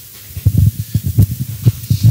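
Muffled speech of an audience member asking a question far from the microphone, heard mostly as a quick run of dull, low syllables.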